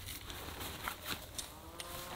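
Light knocks and rustling as a tarp and its long pole are handled. In the second half a faint, long pitched call begins, its tone bending slightly.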